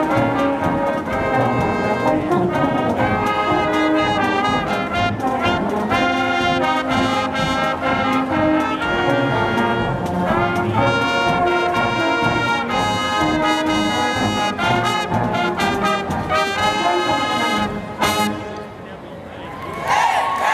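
High school marching band playing a tune at full volume, with trumpets, trombones, saxophones and sousaphones. The band cuts off with a final hit about two seconds before the end, leaving much quieter background sound.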